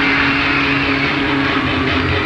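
Loud, steady live concert sound in a darkened hall: a dense roar with one low note held through it.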